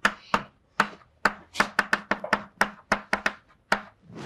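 Chalk writing on a blackboard: a run of sharp, irregular taps and strokes, about fifteen in four seconds, as each character is chalked.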